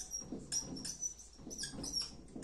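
Whiteboard marker writing on a whiteboard, squeaking in a string of short high squeaks as each stroke is drawn.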